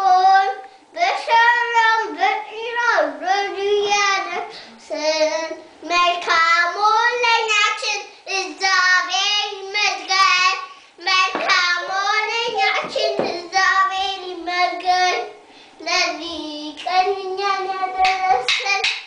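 A young child singing a song alone in a high voice, in phrases with wavering held notes.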